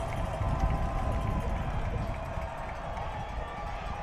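Stadium crowd noise at a football game: a steady low rumble of the stands and field, easing slightly.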